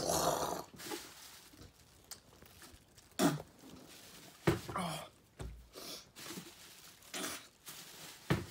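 A man gagging and groaning as he is close to vomiting: a loud rough breath out at the start, then three short retching groans spread over the following seconds.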